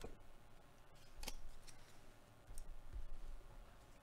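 Trading card pack wrappers and cards being handled: a handful of short, sharp crackles and snips over about three seconds.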